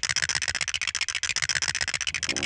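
Cartoon sound effect of chattering teeth: a fast, even clatter of clicks, about a dozen a second.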